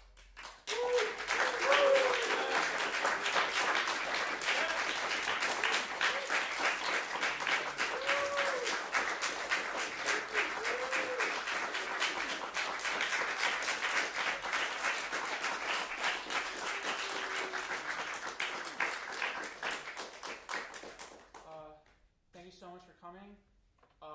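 Audience applauding after a live jazz number, starting just after the music ends and dying away near the end, with a few short cheers mixed in.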